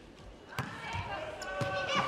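A volleyball struck twice, about a second apart: the serve and then the receive. Crowd voices rise in the arena behind it.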